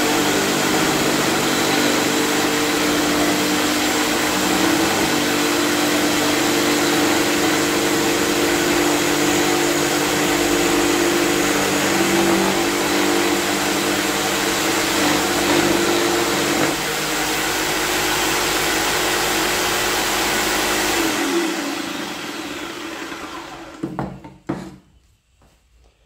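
Jigsaw mounted upside down under a homemade bench table, running steadily as a laminated particleboard strip is fed through its blade. About 21 seconds in it is switched off and the motor winds down in falling pitch, with a brief knock near the end.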